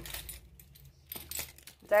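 A bunch of keys on a metal key ring jingling briefly in the hand, a few light metallic clinks.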